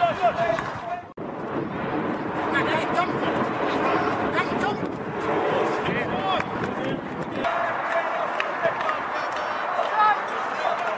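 Several people's voices calling and shouting at once across an open football pitch, with the sound cutting off and restarting abruptly about a second in.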